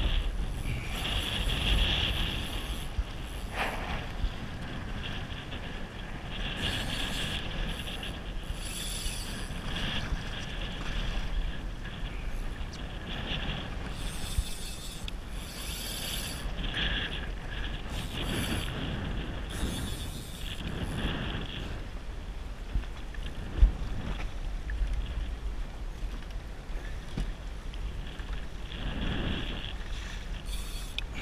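Wind blowing over the microphone with choppy sea water slapping and washing against a kayak hull, in uneven surges, and one sharp knock a little past two-thirds through.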